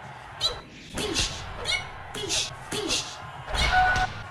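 A man's voice making short wordless vocal sounds, with pitch swoops and hissing consonants, in bursts about every half second.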